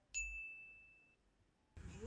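A single bright ding, a bell-like chime sound effect, struck just after the start and ringing one clear high tone that fades out over about a second. It marks the title card for the next meme.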